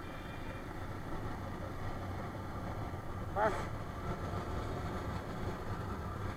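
Motorcycle engine running at a steady cruise, with road and wind noise, heard from the bike itself. A short pitched sound rises and falls about three and a half seconds in.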